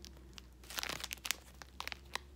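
Clear plastic bag crinkling as it is handled, in a few short rustling bursts, the loudest about a second in.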